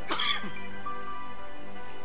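Soft background music of sustained, held tones, with a brief throat clearing in the first half-second.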